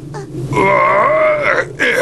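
A man's voice-acted, strained groan of pain lasting about a second, followed by short grunts near the end. It is a fighter's reaction to a hard blow.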